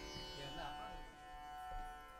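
A faint, steady drone of several held tones: the shruti pitch reference sounding under a Carnatic ensemble between pieces.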